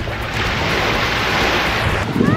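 Small surf washing up a sandy shore: a swell of hiss that builds about half a second in and fades out near the end.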